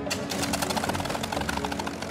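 P-51 Mustang's V12 engine turning over at low speed, its cylinders firing in a rapid, even run of pops, with music playing under it.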